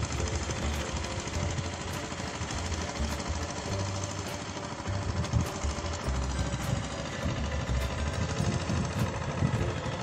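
Small engine of a rice transplanter running steadily with a mechanical chatter.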